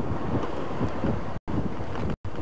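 A car on the move: a steady rush of wind and road noise over the microphone, with a faint engine hum underneath. The sound cuts out for a split second about one and a half seconds in.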